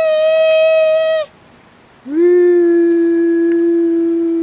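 Voices holding two long sung notes. A high drawn-out 'bye' stops about a second in, and after a short pause a lower note is held steady to the end.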